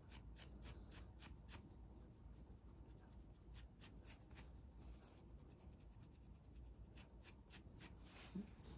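Faint scratching on a scalp through thick hair: short, sharp strokes a few per second, coming in runs with a pause in the middle.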